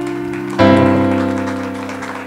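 Electronic piano sound from a virtual piano program: sustained chords, with a new chord struck about half a second in that slowly fades.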